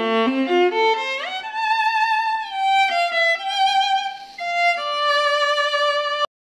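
Solo viola made by Daniel Parker in London in 1714, being bowed: a few quick notes, a slide up into a held note with vibrato, a short phrase stepping down, and a long held note at the end.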